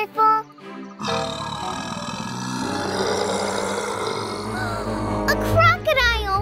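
A loud cartoon animal roar that starts suddenly about a second in and lasts about three seconds, over background music, followed near the end by warbling calls.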